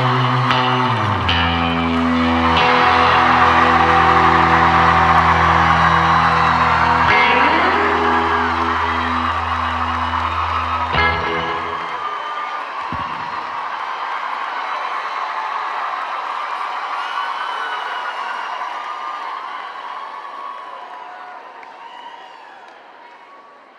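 Live rock band holding the song's final chord while a concert audience whoops and cheers. The band stops with a sharp final hit about halfway through, leaving the crowd cheering, and the cheering slowly fades out.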